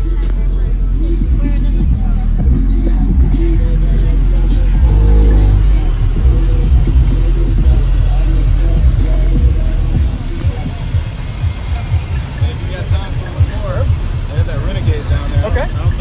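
Car audio system playing bass-heavy music, its deep bass cutting off about ten seconds in. After that an engine idles with a lower, uneven rumble.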